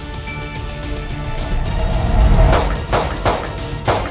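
Pistol shots, four in quick succession over about a second and a half in the second half, heard over background music.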